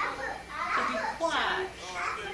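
Children's voices talking and playing, with no clear words.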